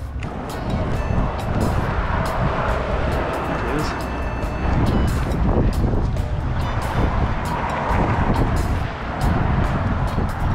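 Strong wind blowing across the microphone: a steady low rumble with a broad hiss over it.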